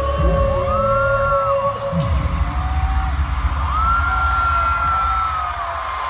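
Loud live concert music over the PA, heard from the crowd. Heavy bass runs throughout, with long, high held tones that glide up into each note and back down at its end.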